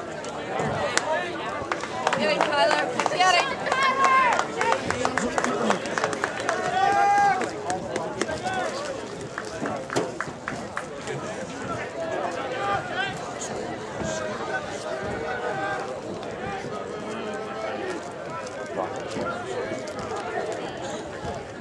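Voices of spectators and players talking and calling out at a ballfield, busiest and loudest from about two to eight seconds in, with one drawn-out shout near seven seconds. Scattered sharp smacks sound through it.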